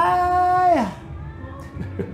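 A man's voice singing along, holding one high note that falls in pitch and stops about a second in.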